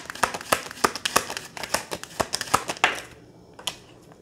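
Tarot cards being shuffled and handled, a rapid run of sharp card clicks and flicks for about three seconds, ending in a swish, then much quieter.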